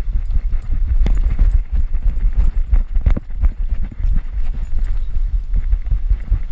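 Rapid, uneven thudding and jostling from a camera mounted on a running dog's back, its footfalls shaking the mount, with a few sharper knocks.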